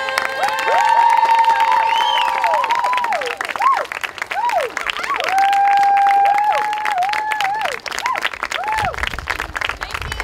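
Audience applauding and cheering, with voices holding long notes that slide up into each note and fall away at the end, one rising higher in a whoop about two seconds in.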